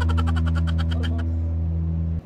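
Background music: a sustained low drone with a rapid run of ticks, about a dozen a second, that fades out a little over a second in.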